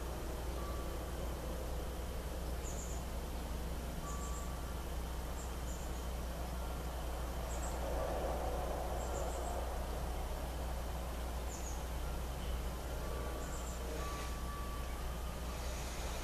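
Quiet outdoor background: a steady low hum, swelling slightly about halfway, with faint short bird chirps every second or two.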